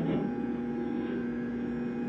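Steady electrical hum with a low, unchanging tone, running under the audio of a recorded interrogation-room interview.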